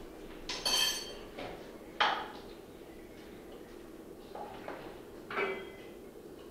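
A metal spoon clinking against kitchenware: a ringing clink about half a second in, a sharp knock at two seconds, a couple of light taps, and another ringing clink near the end.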